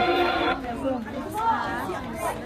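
Singing with music cuts off about half a second in, followed by people chatting.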